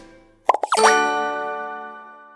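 Cartoon logo sound effect: about half a second in, two or three quick pops and a short rising blip, then a chime of several tones that rings on and slowly fades.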